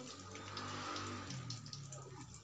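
Egg and bitter-gourd omelette sizzling in oil in a nonstick frying pan, a faint steady hiss with a low steady hum underneath.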